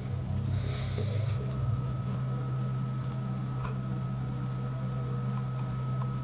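A steady low hum with a faint, thin higher tone above it. A brief rustle comes about half a second to a second in, and a few faint ticks follow.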